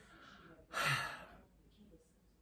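A woman's sigh: one breathy exhale, a little voiced, lasting under a second.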